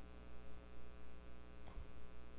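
Steady low electrical mains hum, a constant buzz with a row of evenly spaced higher overtones, with a faint short sound about three-quarters of the way through.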